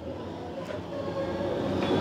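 A steady background rumble that grows gradually louder, with a faint hum in it.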